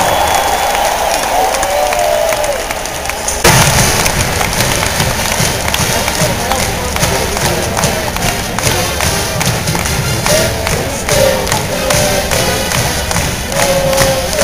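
Large stadium crowd cheering; about three and a half seconds in, a marching band suddenly strikes up with a steady, driving drum beat, and the crowd keeps cheering over it.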